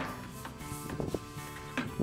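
Background music with steady held notes, with a few faint knocks in it.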